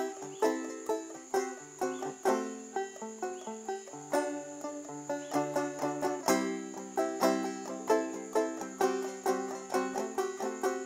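Banjo picking a melody: single plucked notes and chords at a lively, uneven pace, several a second, each ringing out and decaying.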